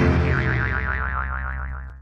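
Comic 'boing' sound effect with a quivering, wavering pitch, ringing out over the tail of the intro music and fading away steadily until it cuts off abruptly at the end.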